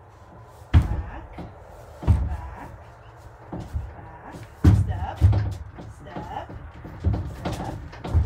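A young horse's hooves thudding on the floor of a horse trailer as it backs out: about five heavy hoof strikes, spaced one to two seconds apart.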